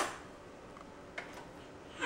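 Cutlery being taken out of a dishwasher's utensil basket: one faint clink about a second in, with quiet room tone around it.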